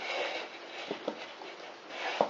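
Hands pressing crumbly streusel dough into a small springform pan lined with baking paper: rustling of dough and paper, with a couple of light knocks about a second in.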